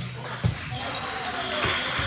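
A ball striking hard once about half a second in, with a few lighter knocks later, over voices echoing in a large gym hall.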